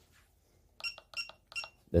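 PAX S80 card terminal beeping three times: short, high electronic beeps about a third of a second apart.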